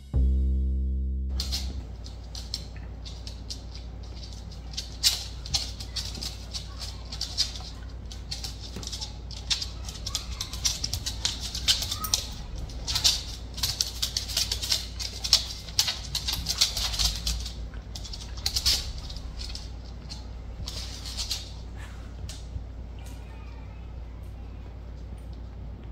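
The last note of a short intro jingle fades out in the first second or two. Then come irregular light clicks and rattles, with a low steady hum beneath: dogs' claws clicking on a wooden floor and a metal collar tag rattling as two Shiba Inus move about.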